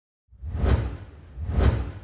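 Two whoosh sound effects with a deep low rumble in a logo intro. The first swells up about half a second in and the second about a second and a half in.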